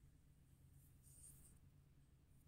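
Very faint swish of a thin paintbrush drawn along paper while painting a stem, lasting about a second near the middle, over a low steady hum.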